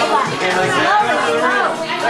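Overlapping chatter of several voices over music playing.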